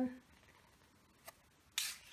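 Cardstock being handled and turned over on a paper-covered desk: a faint tap about a second in, then a short papery rustle near the end.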